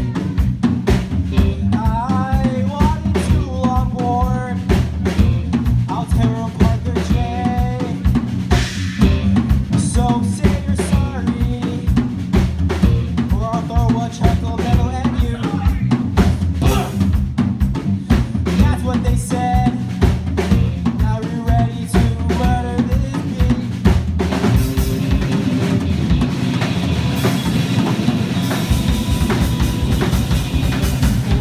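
A small rock band playing live: an electric guitar line over bass guitar and a busy drum kit. About 24 seconds in, the playing moves into a denser, brighter section with more sustained wash.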